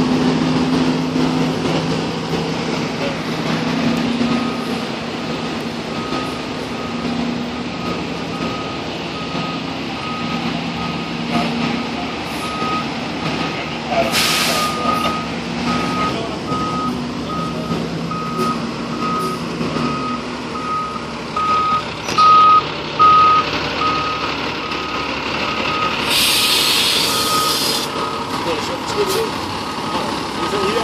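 Fire engine backing up: its back-up alarm beeps at a steady, regular pace from about four seconds in, over the truck's diesel engine running. Two hisses of air, typical of the air brakes, come about halfway through and, longer, near the end.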